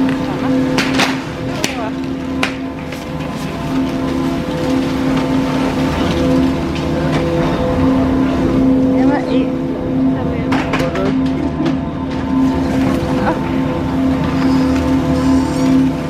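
Chairlift station machinery and loading conveyor carpet humming steadily, with a few sharp clicks and clatters of skis and the chair about a second in and again around ten to twelve seconds in as the chair moves off.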